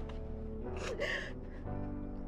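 Film score music with sustained, held notes. A short gasp cuts in about a second in.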